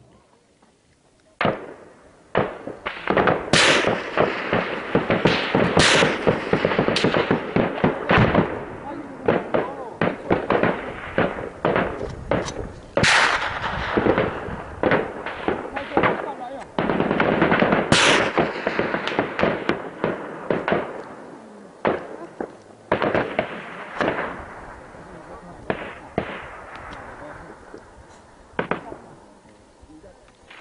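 Sustained gunfire: rapid, irregular volleys of loud cracks and bangs starting about a second and a half in, heaviest in two long spells and thinning out near the end.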